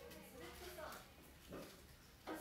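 A faint person's voice in the background, a few soft words in the first second and a brief sound about a second and a half in, over a quiet room with a low steady hum.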